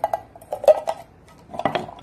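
Empty open-ended tin cans knocking and clinking against each other as they are handled: a few sharp metallic knocks, the loudest about two-thirds of a second in and another pair near the end.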